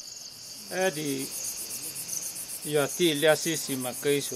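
A steady, high-pitched chorus of insects, pulsing evenly at about ten beats a second. A man talks in short phrases over it, starting about a second in and again from near the three-second mark.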